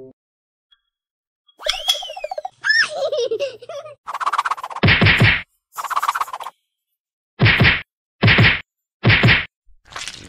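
A run of cartoon-style sound effects. First come short whistle-like tones sliding up and down, about two seconds in. Then come loud noisy bursts, the last three short and evenly spaced just under a second apart.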